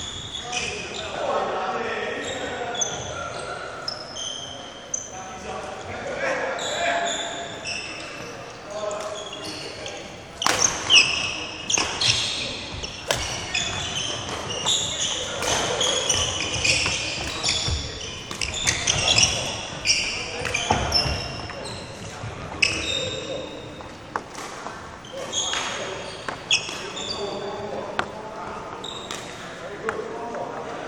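Badminton racket strikes on a shuttlecock, sharp and spaced a second or more apart, with sports shoes squeaking on the wooden court floor, in a large echoing hall.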